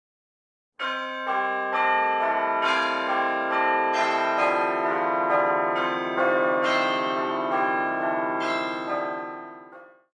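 Bells ringing a steady run of strikes, about two a second, beginning about a second in. Each note rings on into the next, and the sound fades away near the end.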